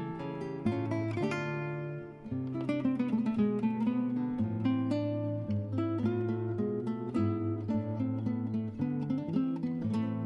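Background music: acoustic guitar picking and strumming, with a brief lull about two seconds in.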